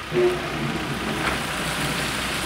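Steady rushing noise with a low hum beneath it.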